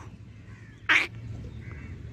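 A single short harsh bird call about a second in.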